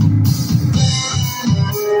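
A live band playing: electric guitar and bass guitar over a drum kit keeping a steady beat with regular cymbal strokes.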